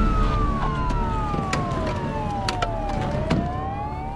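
Police car siren wailing, its pitch falling slowly over about three seconds and then starting to rise again near the end, over a low rumble with a few sharp cracks.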